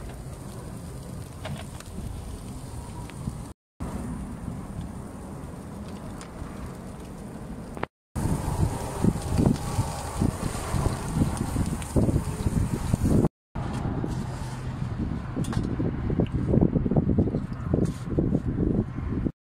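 Wind buffeting the microphone beside a charcoal grill: a low rumble with irregular gusts that grow stronger about halfway through. The sound breaks off briefly three times.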